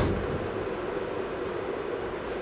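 Steady hiss of room tone and microphone noise in a pause between spoken words, with a faint high steady tone.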